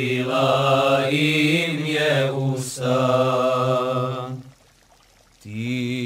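Male voices singing a cappella, a melody line over a low held drone. The singing breaks off about four and a half seconds in and comes back in a second later.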